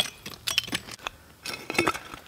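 Hand digging tools scraping and clinking into soil full of broken glass and iron fragments: a series of short, sharp clinks and scrapes, the loudest right at the start.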